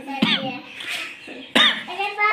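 A small child's short, high-pitched vocal sounds: a brief cry just after the start and a louder one about a second and a half in.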